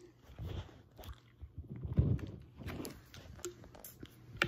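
Soft swallowing of soda drunk from a plastic bottle, with small knocks and clicks as the bottle is handled. The loudest is a low gulp or thump about halfway through.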